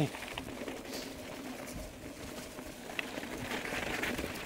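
Steady riding noise of a Cervelo ZFS-5 mountain bike rolling fast down a dirt trail: tyres on dirt and wind rushing past the bar-mounted camera, with a light click about three seconds in.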